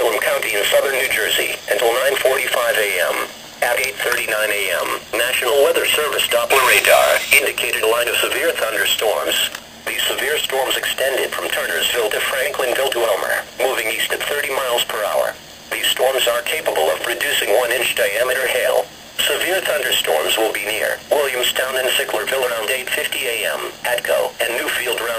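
Speech from a weather radio: a broadcast voice reading a severe thunderstorm warning, in phrases with short pauses.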